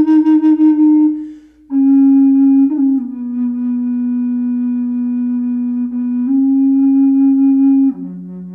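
Teak bass flute in F#, a side-blow Native American-style flute, playing a slow melody of long held low notes. The first note pulses with vibrato and ends about a second in; after a short breath pause a new note starts, flicks through a quick grace note, steps down to a lower held note, and rises back near the end.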